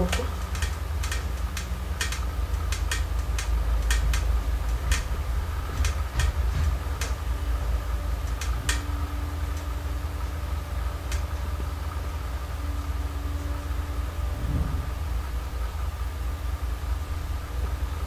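A steady low background rumble, with scattered light clicks and taps, most of them in the first half.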